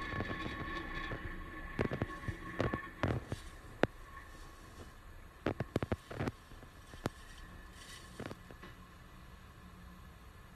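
Falcon 9 first stage's nine Merlin 1D engines heard from the ground during ascent: a low rumble that fades as the rocket climbs away, with irregular sharp crackles and pops.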